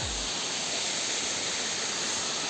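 Shallow rocky stream running over stones and boulders, a steady rushing hiss of water.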